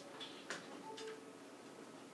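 Quiet room tone with a few faint, short clicks, the sharpest about half a second in.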